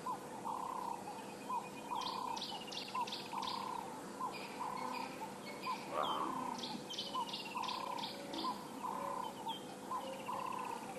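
Several birds calling in the bush: a steady series of short notes about twice a second, a falling trill, and runs of rapid high chips, over a faint steady insect hum. A louder, brief call comes about six seconds in.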